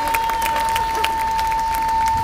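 Concert audience applauding, with scattered claps and a little cheering, over a single steady high tone held throughout.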